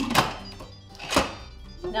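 Lid of an 8-quart Instant Pot pressure cooker being seated and twisted shut: a clunk right at the start and a second one about a second later as it locks into place.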